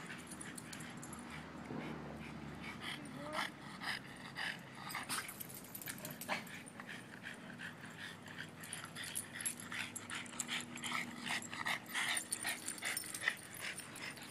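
Boston terriers playing: a running stream of quick clicks and scuffles with occasional whimpers and short yips, busiest in the last few seconds.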